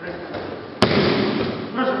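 An aikido partner's body landing on the tatami mat in a throw: one sharp slap about a second in, then about a second of rustling noise.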